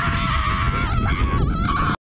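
A loud, nasal honking cry, held for about two seconds at a near-steady pitch with two brief dips, over a low rumble. It cuts off abruptly at the end.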